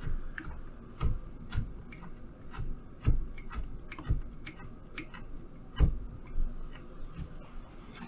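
Irregular small clicks and ticks, with a few louder knocks, as the threaded connector of a power cable is hand-screwed onto a port on the Meca500 robot's power supply block.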